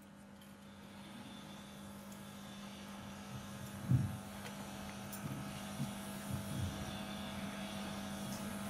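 A steady low hum that slowly grows louder, with a soft low thump about four seconds in and a few fainter low sounds after it.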